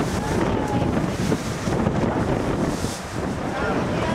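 Wind buffeting the microphone in a steady rumble, with faint voices of people talking further off, briefly near the start and again near the end.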